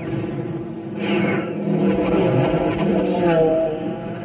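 A woman crying without words, in wavering moans that grow louder about a second in.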